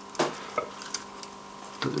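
Small plastic clicks and scrapes of TT-scale model wagon couplers being worked with a tool, with a sharper knock just after the start and a few faint ticks after it. The couplers will not hook together properly. A faint steady tone runs underneath.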